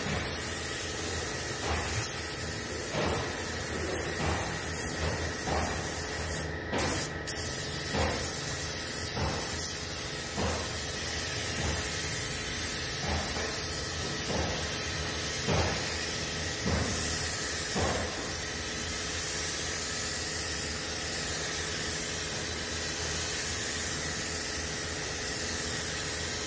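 Compressed-air gravity-feed spray gun spraying clear coat: a steady hiss of air and atomised paint, cut off briefly twice about seven seconds in.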